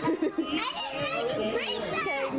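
Excited voices of a small group exclaiming and cheering in high, rising tones, without clear words.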